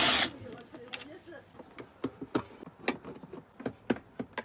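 Cordless drill-driver backing a screw out of a rice cooker's plastic base: a short burst of the drill at the very start, then scattered clicks and taps of the tool and hands on the plastic housing.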